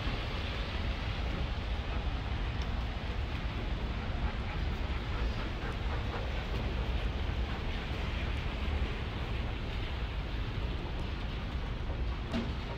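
Steady outdoor background noise with a heavy low rumble and no distinct events.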